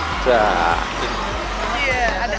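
A high woman's voice calls out briefly, gliding down in pitch, and again near the end, over the steady murmur and hum of a crowd.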